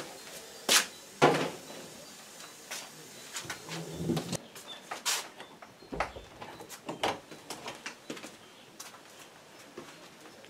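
Scattered knocks and clicks, like things being handled in a small room, with two louder knocks about a second in.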